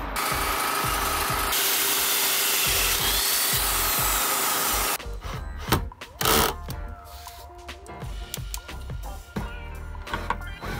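Black+Decker cordless drill driving long screws into wooden panels, over background music. The first half is a loud steady noise; after about five seconds it turns quieter, with short bursts and clicks.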